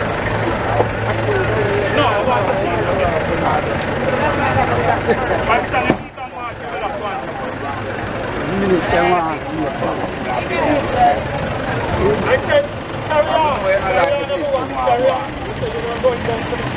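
Unclear voices of people talking over each other, with a vehicle engine idling under them in the first part. The sound dips sharply about six seconds in.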